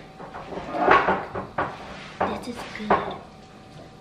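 Kitchen clatter: about five sharp knocks and clinks of dishes and cupboard doors in three seconds, the loudest about a second in, with indistinct voice sounds.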